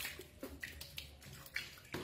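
Water splashing in a small plastic dipper as a hand washes a baby monkey: a run of irregular splashes, the loudest just before the end.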